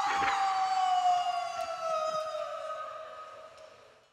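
A sustained whining tone with overtones, sliding slowly down in pitch and fading away toward the end, with a brief low thud near the start.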